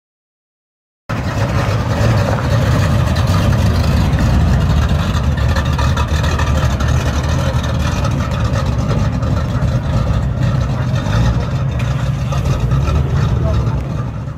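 Classic convertible car's engine idling with a steady low rumble, starting suddenly about a second in.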